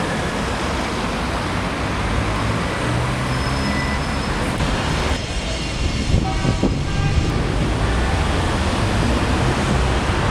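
City street traffic noise with cars passing, a steady low rumble. About five seconds in the hiss thins briefly and a faint pitched whine sits over the rumble.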